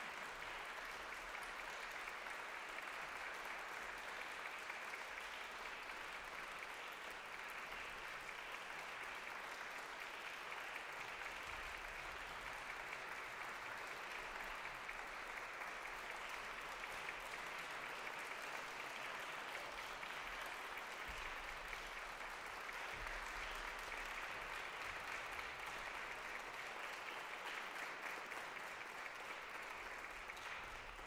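Audience applauding steadily in a reverberant concert hall at the end of an orchestral performance.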